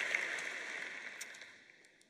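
Large audience applauding, the clapping dying away steadily over about two seconds.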